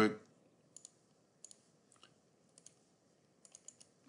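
Computer mouse button clicks: about a dozen light clicks, some in quick pairs like double-clicks, ending in a quick run of four.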